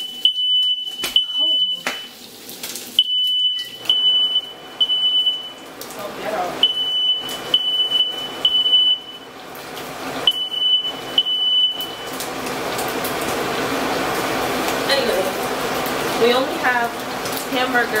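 Smoke alarm sounding its high, steady-pitched beep in repeated groups of three with short pauses, set off by breakfast cooking (frying bacon). After four groups it cuts off about twelve seconds in, while the alarm is being fanned with a cloth.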